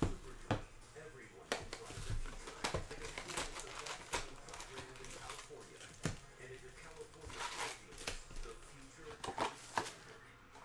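A cardboard box of hockey cards being opened and its foil-wrapped packs pulled out and stacked, with crinkling and rustling and a string of sharp taps and clicks.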